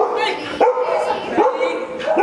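Small dog barking repeatedly: three short barks about 0.7 s apart, each rising quickly in pitch.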